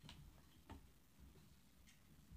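Near silence: quiet room tone with three faint, sharp clicks spread across the two seconds.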